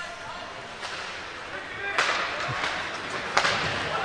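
Ice hockey play heard in the rink: skates scraping on the ice and clacks of sticks and puck. The scraping noise swells about halfway through, and a sharp knock comes near the end.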